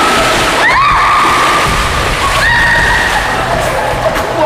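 Water splashing as several people plunge into a swimming pool and thrash about, with high-pitched screams: a short one about a second in and a longer held one from about two and a half seconds.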